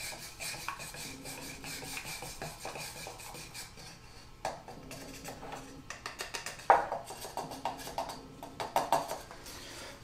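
A flat wooden shim stirring wood stain in a small metal can, scraping and knocking against the can's sides and bottom in an uneven run, with a sharper knock about seven seconds in.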